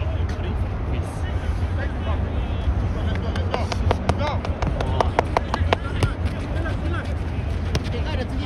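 Shouts of players on an outdoor soccer pitch, too far off to make out, over a steady low rumble. A quick series of sharp clicks, about four a second, comes in the middle.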